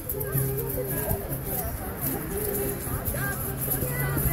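Acoustic guitar with a woman singing a blues song, and egg shakers rattling along.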